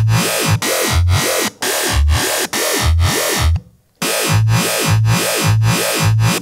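Dubstep growl bass from Ableton's Operator FM synth, played dry as repeated notes, with a tempo-synced LFO sweeping a resonant high-pass filter up and down about twice a second to give a wobbling growl. The third operator's level is still set too high, and the sound breaks off briefly a little past halfway.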